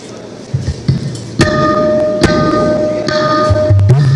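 Tabla playing a classical bol pattern: a few light taps, then from about a second and a half in sharp strokes on the treble drum, each ringing on at a clear pitch. Deep bass strokes with a slight pitch bend join near the end.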